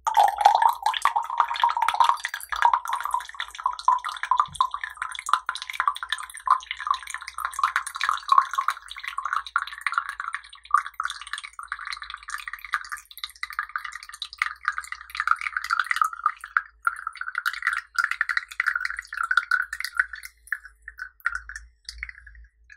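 Green tea poured in a thin stream from a glass pitcher into a tall glass cup, splashing steadily. The pitch of the splashing rises slowly as the cup fills, and the stream breaks into trickles at the end.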